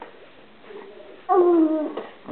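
Baby whimpering: a short, whiny cry starting about a second and a half in and falling slightly in pitch, the fussing of an infant who has had enough of being spoon-fed.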